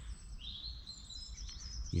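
A small songbird singing: a run of quick, high chirps with a short rising note early on, over a low steady rumble.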